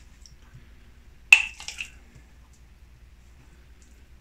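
A single sharp clink with a brief ring about a second in, followed by a few fainter clicks, over quiet kitchen room tone while marmalade is being dropped onto dough by hand.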